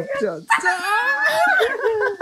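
Voices, then about half a second in a long, high, wavering cry that lasts over a second and fades near the end.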